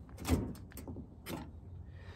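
A new mechanical fuel pump for a Ford 302 worked by hand, its lever pressed against a metal tailgate in about three short, faint strokes as air is drawn in at the hand-covered inlet and pushed out the outlet. This is a bench check that the pump pulls suction and builds pressure.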